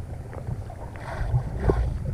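Muffled water sloshing and gurgling around a camera held at or under the water surface, with a steady low rumble and small irregular knocks. Two brief splashy swells come just after the middle.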